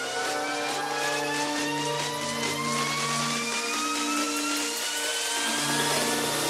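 Electronic dance music played by a DJ, in a build-up: a synth sweep rises slowly in pitch over a swelling hiss. The low bass line drops out about halfway through and comes back near the end.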